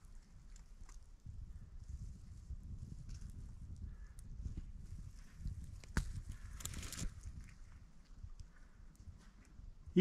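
Faint low rumble and rustling as the camera is handled and moved, with one sharp click about six seconds in and a short rustle just after.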